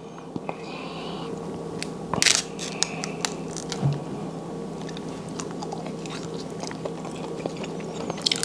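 King crab leg shell cracking and snapping in short, irregular clicks as it is pulled apart and peeled by hand, with a couple of louder cracks about two seconds in.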